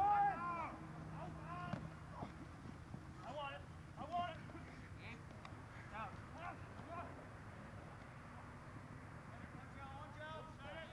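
Men's voices shouting short calls during rugby play, loudest at the very start, then fainter scattered calls through the rest, over a steady background hiss.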